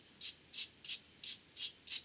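Small brass wire brush scrubbing the tinned pins of an octal vacuum tube: a quick series of short, high scratchy strokes, about three a second. This is a light, finer cleanup of the pins, with brass used so as not to strip the tinning.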